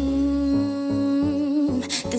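Female vocalist holding one long hummed or sung note that wavers slightly near the end, over a dance track with a deep bass line.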